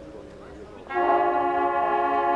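The ring of mallet-percussion notes fades out. About a second in, the corps' bugle line comes in with a loud, held chord of several notes.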